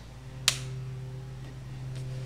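A single sharp click from the miter saw's LED work-light switch about half a second in, as the light is switched on, over a faint steady electrical hum.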